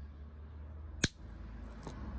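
Thick fused-glass puddle snapping in two along its score line under running pliers: one sharp crack about a second in, followed by a fainter click near the end.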